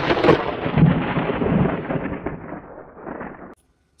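Thunder sound effect: a loud rumble that fades away over about three and a half seconds and then cuts off suddenly.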